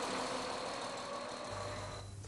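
Faint, steady outdoor background noise: an even hiss with a thin, high, steady whine, fading slightly toward the end.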